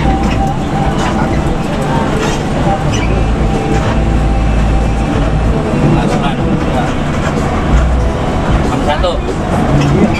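Steady engine and road noise heard from inside an intercity bus's cab at highway speed, with a deep rumble that swells for a couple of seconds near the middle.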